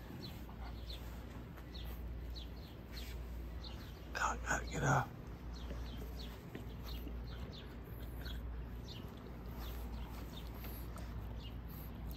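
Quiet outdoor background with a low steady hum and scattered faint bird chirps; a brief low voice cuts in about four seconds in.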